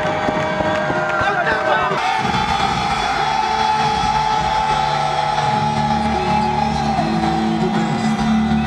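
Crowd shouting and cheering for about two seconds, then music with steady bass notes comes in over the crowd noise.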